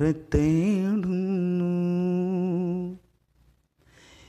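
A man's voice singing one long held note with no accompaniment, wavering at first and then steady, breaking off about three seconds in.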